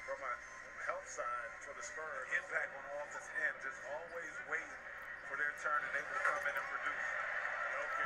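Faint NBA television broadcast audio: a commentator talking over steady arena crowd noise.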